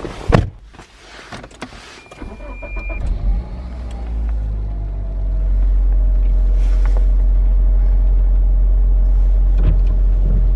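A car door pulled shut with a thump about a third of a second in, then a brief steady beep. A steady low drone of the engine and the car on the move inside the cabin builds over a couple of seconds and then holds.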